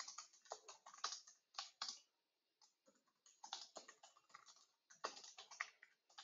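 Faint computer keyboard typing, runs of quick keystrokes broken by short pauses of about a second.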